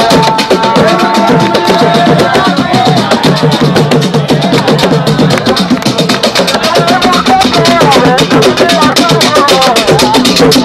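Loud dance music driven by fast, steady drumming, with a wavering melody line over the drums at times.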